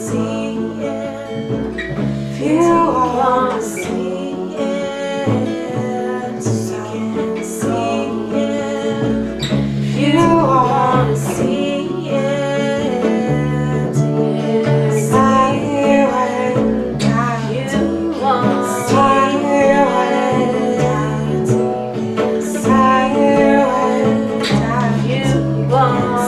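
A small band plays a song together: guitar, bass and keyboard, with singing voices over them. The bass holds low notes that change every second or two, and regular strummed strokes run throughout.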